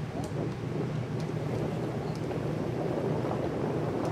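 Wind buffeting the microphone of a phone filming outdoors: a steady rumbling noise.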